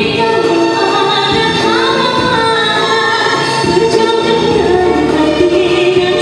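A woman singing into a microphone over musical accompaniment, holding long notes that bend in pitch.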